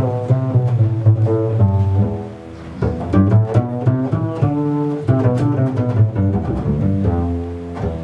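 Double bass played pizzicato: a melodic line of plucked notes, several a second, with a brief softer dip about two and a half seconds in. It is a melody coloured by the touch of the plucking fingers, not a string of stomped-out notes.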